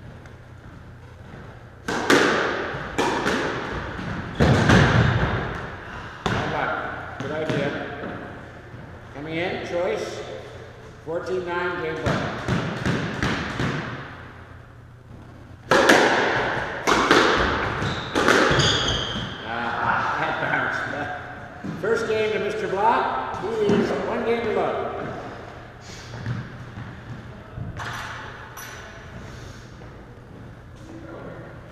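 Squash rally: the ball cracks off racquets and the court walls in quick succession, starting about two seconds in and thinning out near the end, with high squeaks from shoes on the hardwood floor.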